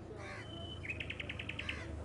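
Crows cawing outdoors, with a quick run of about eight short high notes about a second in, over a low steady hum.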